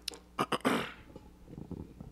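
A person drinking from an aluminium drink can: short sharp sips about half a second in, then a loud breathy rush of air that fades away.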